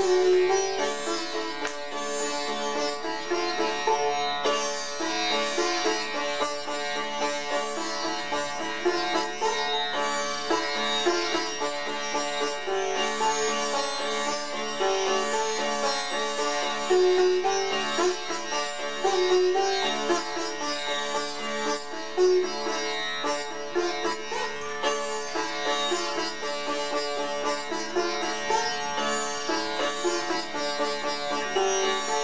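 Sitar played solo, with a stream of plucked melodic notes over a steady ringing drone.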